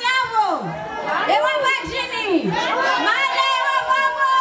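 A woman's voice through a microphone and PA, declaiming in long phrases that rise and fall in pitch.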